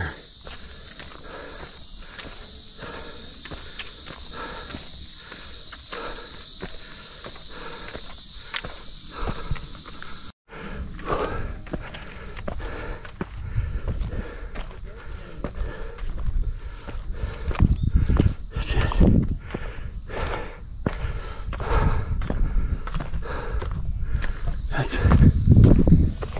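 Footsteps of a runner climbing a steep bare granite rock slope, a steady series of steps. For the first ten seconds a steady high insect drone runs underneath. After a sudden break the drone is gone and the steps come with a louder low rumble.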